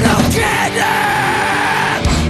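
Hardcore punk song: a yelled vocal held as one long note over the band's distorted electric guitars.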